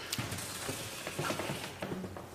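Large paper plan sheets being flipped and handled on an easel, with irregular rustling, crackling and small knocks.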